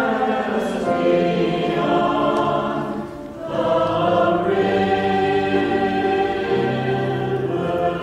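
Mixed church choir of men and women singing an anthem in long held notes, with a brief break between phrases about three seconds in.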